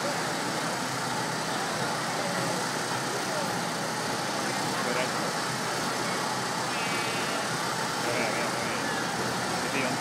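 Steady busy city-street ambience: a continuous wash of traffic with crowd chatter in the background.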